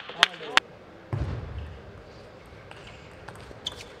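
Celluloid-type plastic table tennis ball bouncing with sharp clicks, twice within the first second, after the point ends. A dull thump follows about a second in, then a few faint ball taps near the end.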